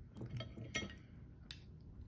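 Light clinks and scrapes of utensils against a plate, then one sharp click about one and a half seconds in.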